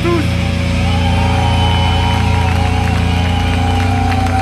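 Deathcore band's amplified distorted guitars and bass sustaining a held chord as the song's final chord rings out, with a steady low drone. A higher held tone enters about a second in and lasts until near the end.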